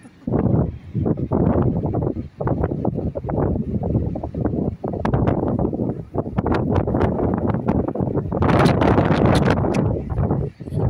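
Wind buffeting the microphone in uneven gusts, with brief lulls, loudest and hissiest near the end.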